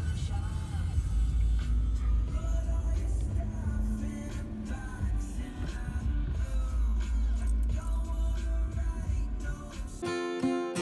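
Music with singing, over the low, steady rumble of a car driving.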